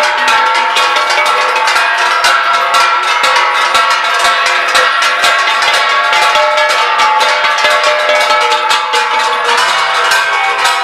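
A metal plate beaten rapidly and steadily with a stick, several strikes a second, its ringing tones piling up into a continuous metallic clatter.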